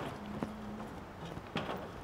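A few sharp knocks, three in about two seconds, with a brief low hum under the first half.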